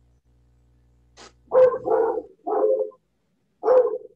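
A dog barking several times in short barks, starting about a second and a half in, heard over a video-call connection.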